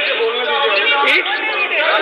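Speech only: men's voices talking over one another in the chamber.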